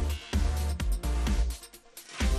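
Electronic dance music with a heavy bass beat; the bass drops away near the end, just before the beat comes back in.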